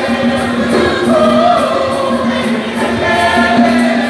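A women's church choir singing a hymn together, several voices holding and moving through sustained notes without a break.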